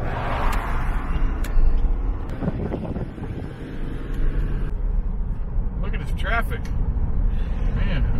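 Car interior noise while driving: a steady low rumble of engine and tyres on the road, with a single click about one and a half seconds in.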